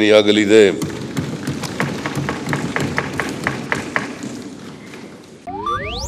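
A man's speech ends under a second in, leaving a news-bulletin music bed: a soft haze with a steady ticking, about four ticks a second, slowly fading. About five and a half seconds in, a rising whoosh starts the channel's ident music.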